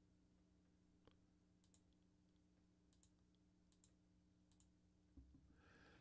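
Near silence: room tone with a faint steady hum and about six faint, scattered computer mouse clicks.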